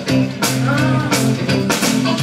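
Live rock and roll band playing: a drum kit with cymbal hits over held bass guitar notes.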